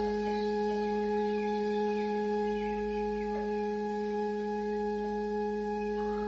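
A steady held musical drone: one low note with fainter higher tones stacked above it, unchanging, as background music under a meditation.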